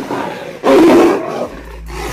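A caged tiger roaring angrily in harsh bursts, loudest just under a second in. It is a provoked reaction after a lioness in the next cage pulled its tail through the bars.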